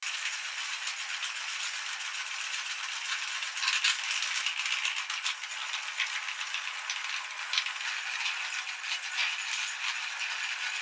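Metal meat grinder running with a continuous dense metallic rattle and clatter, full of small clicks, while socks are fed through it to be shredded.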